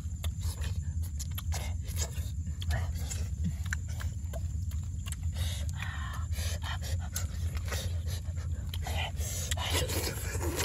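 Close-up eating sounds: many small wet clicks of chewing and lip smacking on hot grilled fish, with breathy puffs of blowing and panting on the hot food. A steady low rumble lies under it throughout.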